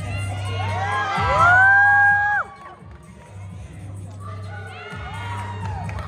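Several voices shouting together in one long rising yell that is held and then cut off sharply about two and a half seconds in, followed by another shorter group shout near the end.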